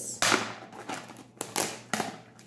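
Sharp cracks and crinkles of a sealed cardboard cosmetics box being opened by hand, its seal giving way. The loudest crack comes just after the start, with a few more about a second and a half in.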